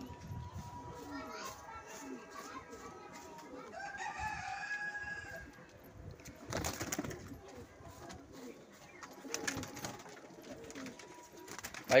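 Domestic pigeons cooing at a low level, with a short burst of noise about six and a half seconds in.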